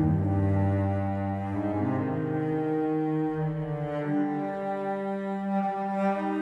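Sampled first-chair solo cello playing a slow legato phrase of long bowed notes, moving to a new note about every two seconds, with a church's reverberation carrying each note on under the next.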